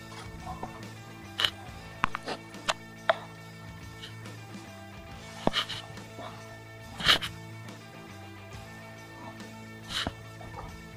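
Background music of steady sustained notes, overlaid by a scattering of sharp knocks and taps, the loudest about seven seconds in.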